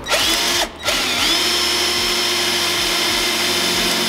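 Cordless drill boring a hole through a car's rear bumper diffuser: a short burst, a brief stop, then the motor spins up, rising in pitch, and runs steadily.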